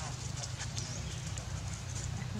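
Outdoor ambience: a steady low rumble with a few faint, short high-pitched chirps from small animals.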